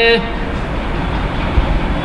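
Steady background noise, a fairly loud even hiss with a few faint low thumps, as a man's spoken word trails off at the start.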